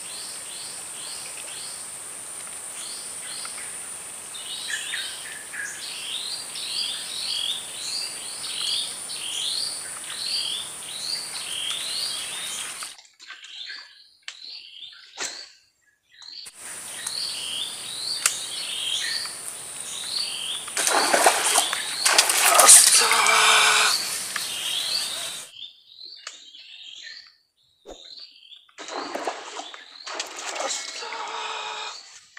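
A bird calling with short repeated chirps, one or two a second, over a steady high-pitched hiss; the sound drops out twice for a few seconds. About two-thirds of the way through, a louder rough noise lasts a few seconds.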